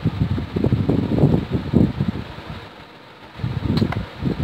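Irregular low rustling and rubbing noises as a plastic tube of aloe vera gel is handled and squeezed over a bowl, easing off briefly about three seconds in.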